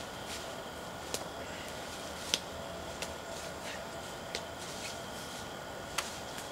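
Footsteps climbing a steep slope of dry leaves and twigs: a few sharp, separate crackles and snaps over a steady hiss.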